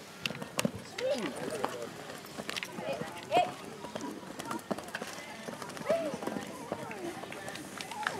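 Indistinct people's voices, loudest at a few moments, over the hoofbeats of a pony cantering on a sand arena.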